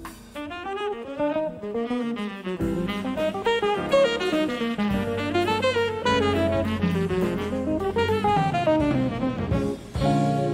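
Live jazz: a tenor saxophone comes in about half a second in and plays fast phrases that run up and down, over a drum kit and the band.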